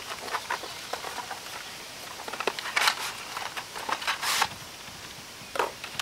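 Handling and opening a small product box for a pair of fishing pliers: light clicks and rustles of the packaging, with two brief louder rustles near the middle.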